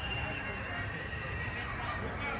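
Outdoor ambience with a steady low rumble and a long thin high tone that steps down in pitch about halfway through.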